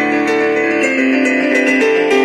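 Electric stage piano playing sustained chords under a melody line, the harmony changing about a second in and again near the end.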